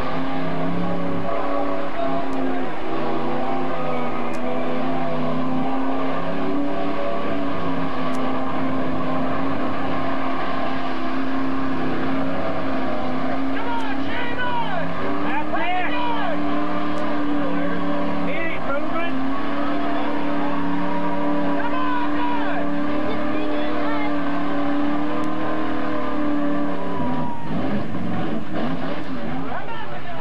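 A pickup truck's engine held at high revs as it churns through a deep mud pit, its tyres spinning and flinging mud. The pitch wavers only a little, and the held note ends a few seconds before the end.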